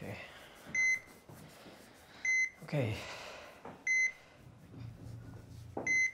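Hospital heart monitor beeping: a short, high beep about every one and a half seconds, four times.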